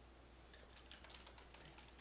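Faint computer keyboard typing: a few quiet keystrokes over near-silent room tone.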